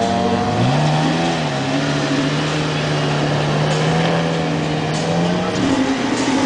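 Lamborghini Murciélago LP640's V12 engine pulling away: the revs rise about half a second in, then hold steady as the car drives off.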